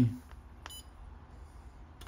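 A single short, high-pitched electronic beep from the Pentair Fleck 5800 XTR2 control valve's touchscreen, confirming a button tap, about two-thirds of a second in.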